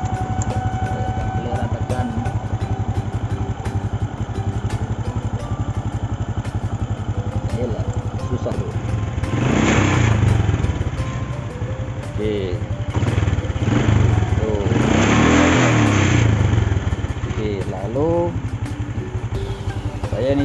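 Honda Supra X125's single-cylinder four-stroke engine idling, blipped on the throttle twice, briefly about ten seconds in and longer around fifteen seconds, while the rev reading on a newly fitted CBR150 tachometer is tested.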